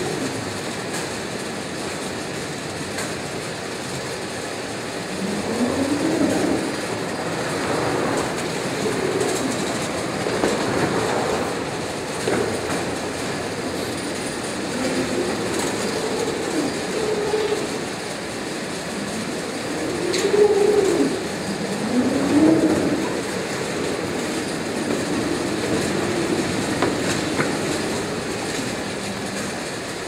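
Roach Gator Singulator powered roller conveyor running, cardboard cartons rolling across the rollers with a steady mechanical running noise. A few short rising tones stand out about six seconds in and again around twenty seconds.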